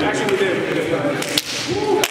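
Sharp hand slaps as basketball players shake hands and high-five after the game, with the loudest slap about one and a half seconds in, over men's voices talking.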